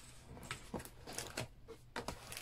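Faint handling noise: a few light taps and rustles of paper and cardboard as merchandise is moved and lifted out of a cardboard box.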